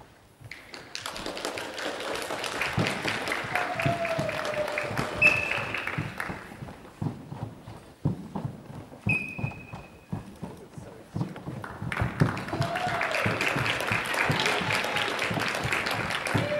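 Bare feet stepping and stamping on a wooden sports-hall floor during a karate kata, heard as scattered thuds. These sit under a constant hubbub of voices in the hall. The voices are thickest early and late, while the thuds stand out alone in the quieter middle stretch.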